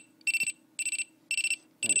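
Scantronic Mosaic alarm keypad's built-in sounder beeping during a sounder test: a high-pitched electronic tone pulsing evenly, about two short beeps a second.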